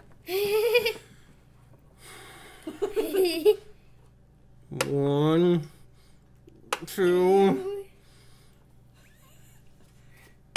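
Short bursts of people's voices with laughter, four of them about two seconds apart, quiet in between.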